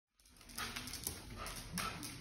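Siberian huskies making dog sounds while tugging at a rope toy, with a few short louder sounds about half a second apart.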